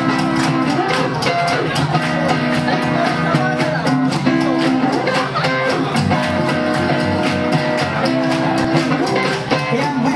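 Live rockabilly band playing with a steady fast beat: upright bass, guitars and drums.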